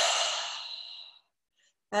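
A woman's slow, audible exhale, fading away after about a second.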